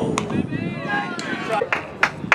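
A sharp pop of a baseball hitting a leather glove just after the start, then voices calling out, with a couple of fainter clicks.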